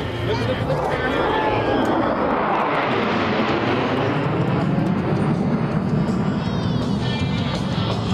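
Jet engines of a four-ship formation flying overhead, a loud steady rush that sweeps down in pitch as the jets pass, with music and a voice mixed in.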